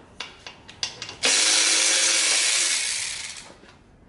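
A few light handling clicks, then a handheld power tool runs loudly for about two seconds and winds down, during the dirt bike's engine teardown.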